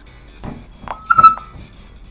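A short, steady synthesized beep of one pitch with overtones, lasting about a third of a second, from the dagger sensor's sound display voicing the edge-vector component of a thrust. Two knocks come before the beep.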